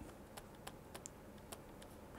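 Several faint, irregular clicks and taps of a stylus on a pen tablet during handwriting.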